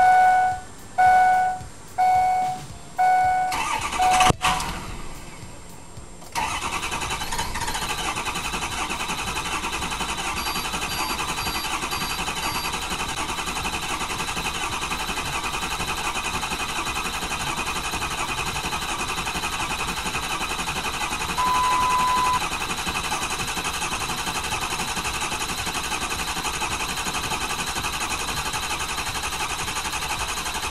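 Ford 6.0 Power Stroke diesel V8 with the key on: five warning chimes about a second apart, then the starter cranks the engine steadily for over twenty seconds without any change in sound. This long crank is the sign of a failed FICM (fuel injection control module).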